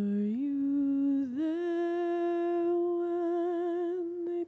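A single unaccompanied voice humming or singing a slow wordless melody on an "oo" sound. The notes step upward twice in the first second and a half, then one note is held long with a gentle vibrato.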